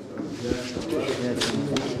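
Indistinct voices of several people talking over one another.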